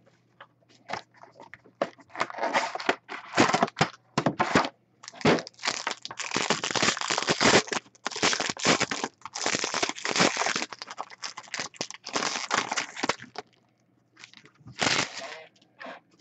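Foil wrapper of a hockey card pack crinkling and tearing as it is pulled open by hand: a long run of crackly rustles with short breaks, then one last burst near the end.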